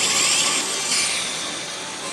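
Pachislot machine battle sound effects, with a rising whooshing sweep in the first second, over the constant noisy din of a pachinko hall.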